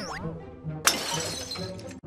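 Cartoon sound effect of china crockery shattering as a thrown dish smashes, with one sharp crash about a second in, over light background music.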